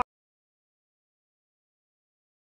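Silence: the sound track cuts out completely.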